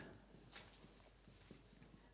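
Faint strokes of a marker pen writing on a whiteboard, a few short soft ticks and scratches.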